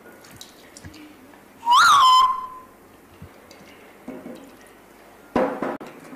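A short whistle about two seconds in: the pitch swoops up, dips, then holds one note for about half a second before fading.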